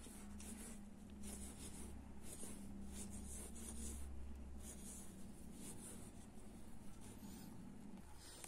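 Faint, intermittent rustling and scratching of a steel crochet hook pulling fine polyester thread through stitches, in short repeated strokes over a low steady hum.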